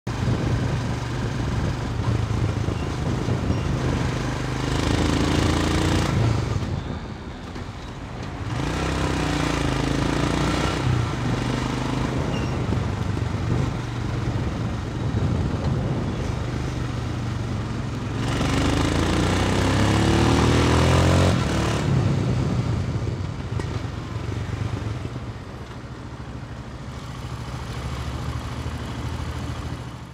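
2017 Royal Enfield Himalayan's single-cylinder engine running on the road, rising in pitch as it accelerates through the gears, about five seconds in and again around eighteen seconds in, with a brief drop when the throttle is closed around the seventh second. Wind noise on the helmet-mounted microphone runs under it. Over the last several seconds the engine eases off and runs quieter as the bike slows to a stop.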